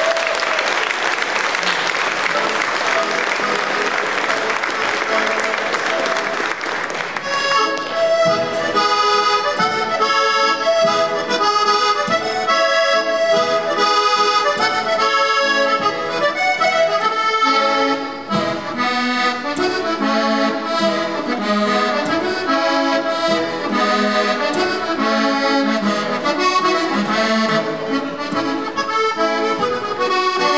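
Applause for about the first seven seconds, then a solo diatonic button accordion starts a tune, melody over repeating bass notes, and plays on through the rest.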